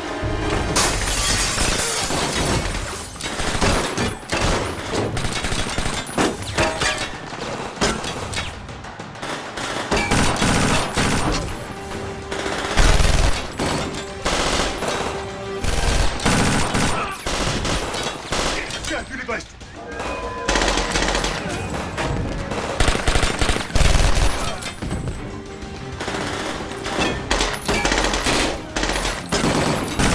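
A gunfight: many bursts of rapid gunfire, with music underneath. The loudest shots come about halfway through and again past the two-thirds mark.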